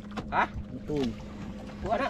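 Three short calls from men's voices, bending in pitch, over a steady low machine hum.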